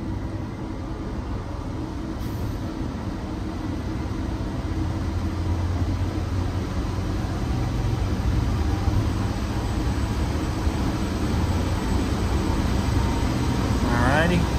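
Supply blower of a Trane self-contained Intellipak, driven by its variable frequency drive, speeding up toward full speed: a steady hum and rush of air that grows gradually louder.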